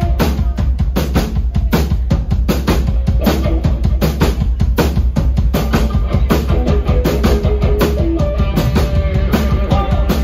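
Live band playing an instrumental passage: three electric guitars over a drum kit, with a steady kick and snare beat.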